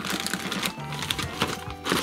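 Background music over handling noise: the crinkle of a plastic bag and the clicks and clatter of large red plastic spring clamps being moved and set down.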